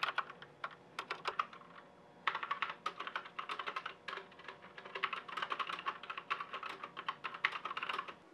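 Fast typing on a computer keyboard: rapid key clicks in quick runs, with a short pause about a second and a half in. The typing then carries on and cuts off abruptly at the end.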